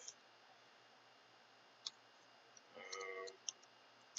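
Near silence with a few faint clicks from working a computer's keyboard and mouse, one about two seconds in and another near the end. A short murmured voice comes just before the last click.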